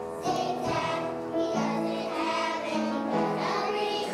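A group of young children singing a song together as a class choir.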